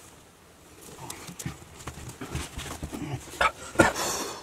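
A series of irregular knocks and scuffs that grow louder, with two sharper, louder knocks near the end.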